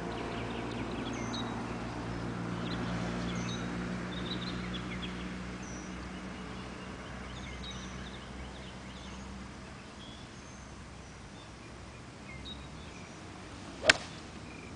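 A golf club striking the ball cleanly, one sharp crack near the end and the loudest sound, from a well-struck shot. Before it a low steady hum fades out about two-thirds of the way through, with faint bird chirps throughout.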